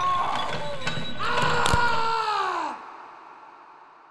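Dramatic sound effect: sharp clicks under a long, strained pitched sound that bends down in pitch and breaks off about two and three-quarter seconds in, leaving an echoing tail that fades away.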